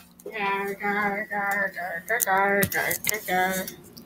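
A person singing a short tune in a series of held notes.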